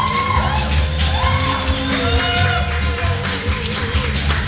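Blues band playing live: an electric lead guitar plays long bent notes, held with vibrato near the end, over electric bass and drums with regular cymbal hits.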